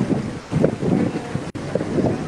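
Wind buffeting the microphone on a moving river tour boat, with the boat's motor running underneath; a single sharp click about a second and a half in.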